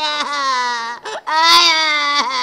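A man's exaggerated comic wailing: two long, steadily held cries, the second a little higher in pitch, with a short break between them about halfway through.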